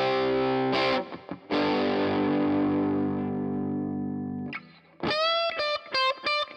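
Overdriven electric guitar chords through a reverb pedal: a chord stops about a second in, then another is struck and left to ring and fade for about three seconds before it is choked off. Near the end, single sustained lead notes start.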